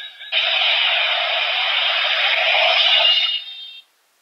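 Electronic sound effect from a DX Kaenken Rekka toy sword's small speaker: a steady hissing rush that starts just after the beginning and cuts off near the end.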